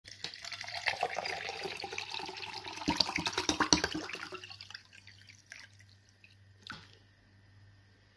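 Water poured from a plastic bottle into a drinking glass, a splashing pour that runs for about four and a half seconds and then stops. A couple of faint knocks follow.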